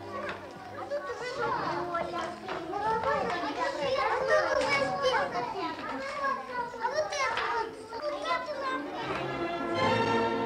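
Several small children chattering and calling out together, many voices overlapping, with faint orchestral music underneath at the start and again near the end.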